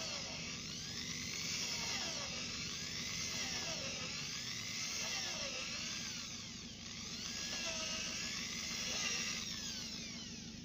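Corded electric drill boring through a timber board, its motor whine rising and falling in pitch over and over as the load on the bit changes. The whine stops near the end.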